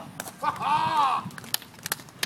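A person's wordless shout or cheer, rising and then falling in pitch, about half a second in, with a few sharp taps around it.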